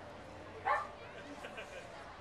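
A single short yelp a little under a second in, rising in pitch, over faint crowd chatter.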